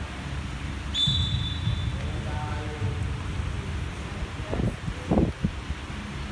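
Basketball-court hall ambience during a pickup game: a steady low background with distant players' voices, a thin high squeak lasting about a second, and two short thuds on the wooden floor near the end.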